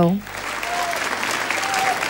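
Studio audience applauding, the clapping starting just as a sung line ends.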